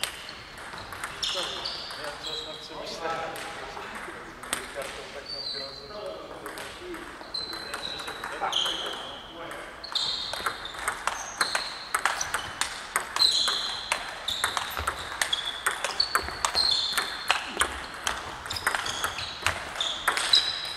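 Table tennis ball clicking off bats and table in a rally, each hit a short sharp pock echoing in a large hall. Scattered hits in the first half, then a fast, steady run of back-and-forth hits from about halfway.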